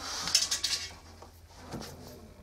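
Drum of an LG F1029SDR direct-drive washing machine being moved by hand, with light metallic clinks and rattle in the first second and one more click near the end. The drum bearings are in ideal condition.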